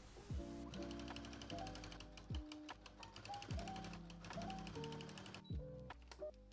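Domestic sewing machine, a Brother XR3340, stitching through thick quilted fabric: a rapid, even mechanical rattle that starts about a second in and stops shortly before the end. Background music with a soft, regular beat plays throughout.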